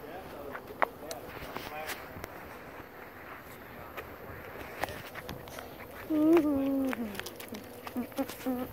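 A child's voice with no words: a few short faint vocal sounds, then about six seconds in one held sung note, the loudest sound, that slides down in pitch, over light footsteps on wood mulch and gravel.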